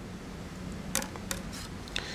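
Faint handling clicks, two about a second in and one near the end, over a low steady hum.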